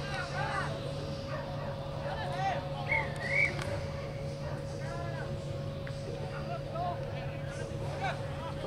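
Scattered, distant shouting from rugby players and sideline spectators over a steady low hum and rumble, with one brief, louder call about three seconds in.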